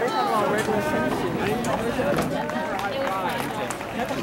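Several people talking at once: background chatter of spectators and athletes, with no single voice standing out, and faint taps under it.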